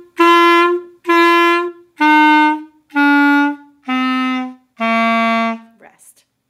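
B♭ clarinet playing a slow, detached beginner's phrase: two repeated notes (written G), then a stepwise descent F, E, D, C at about one note a second, the last note held a little longer.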